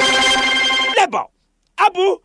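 TV segment ident jingle: a steady, buzzy pitched tone held for about a second, then a short pause and a few brief voice-like syllables.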